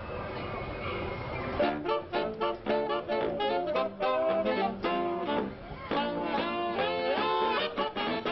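A saxophone ensemble playing a swing tune in short, separate notes, coming in about a second and a half in, with some notes sliding in pitch near the end.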